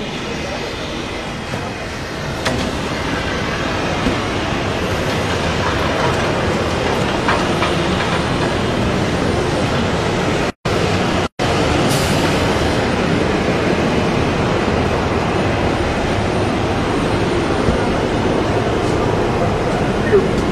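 Loud, steady engine and machinery noise of an airport apron, with no clear pitch. It swells about two seconds in, and the sound cuts out twice, briefly, just after ten and eleven seconds.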